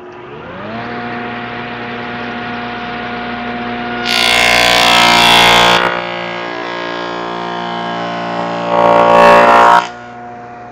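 Table saw motor spinning up to speed and then running steadily. Twice a hickory board is pushed through the blade for tenon cuts, each cut a loud, high-pitched burst of sawing, the first lasting about two seconds and the second about one second near the end.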